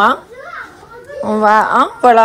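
A child's voice chanting "non" over and over, with one long drawn-out call in the second half.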